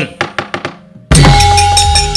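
A few sharp wooden knocks, the puppeteer's cempala on the puppet chest, then about halfway in a gamelan ensemble strikes up loudly all at once with drumming and ringing bronze tones.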